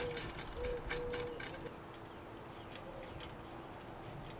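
A dove cooing, a short rising-and-falling note followed by a longer held note, under light metallic clicks of roof-rack bolts and hardware being handled during the first second and a half.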